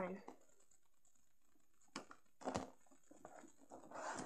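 Faint clicks and light taps of small plastic toy figures being picked up and moved around on a tabletop, in scattered short bursts from about two seconds in.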